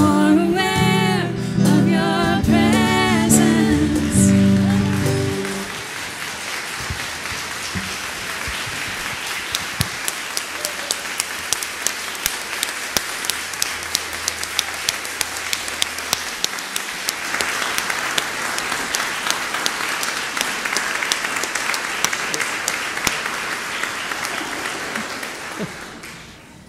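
A song sung with instrumental accompaniment ends about five seconds in. The congregation then applauds for about twenty seconds, the clapping dying away near the end.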